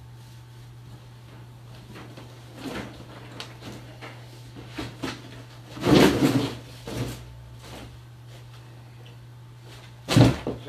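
A folded metal wire dog crate being slid out of its cardboard box: scraping and rustling of cardboard with clattering knocks of the wire frame, loudest about six seconds in with another knock a second later. A steady low hum runs underneath.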